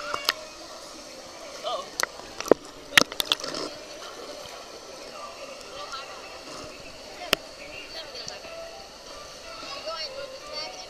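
Background chatter and calls of children at a busy swimming pool, with water sloshing, broken by a few sharp clicks: a cluster between two and three and a half seconds in, the loudest about three seconds in, and one more near seven seconds.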